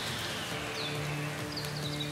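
Ambient background track of soft sustained low music tones over a steady hiss, with a few faint high chirps.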